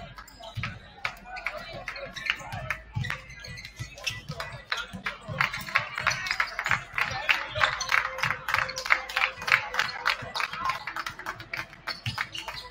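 Music playing over a gymnasium PA, with crowd chatter and the quick thumps of several basketballs bouncing on a hardwood court during warm-ups. The bouncing grows busier and louder about halfway through.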